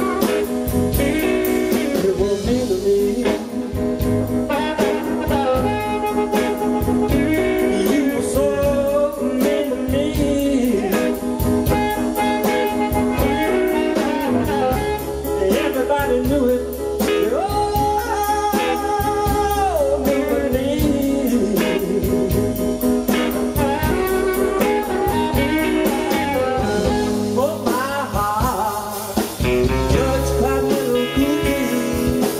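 West Coast blues band playing live: electric guitar, drums and bending, held lines of an amplified harmonica.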